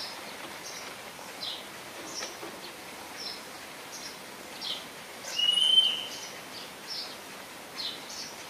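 Small birds chirping over a steady outdoor background hiss: short, high chirps every half second or so, and one longer, louder whistled note a little past the middle.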